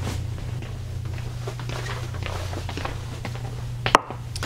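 Footsteps walking through a small room over a steady low hum, with a single sharp click near the end.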